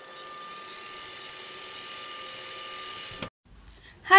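Old film projector sound effect: a steady mechanical whirr with faint ticks about twice a second, cutting off suddenly near the end.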